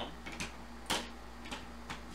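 Four light clicks of hard plastic Beckett graded-card slabs being handled and swapped, the loudest about a second in, over a faint steady hum.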